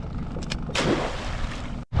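A wire crab trap thrown over the side of a boat splashes into the water about three-quarters of a second in, over the low rumble of wind on the microphone.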